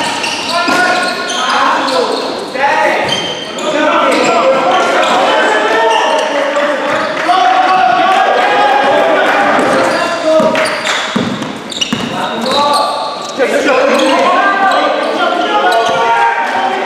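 Basketball bouncing on a sports hall floor as players dribble up the court, with players' voices calling out over it, echoing in the large hall.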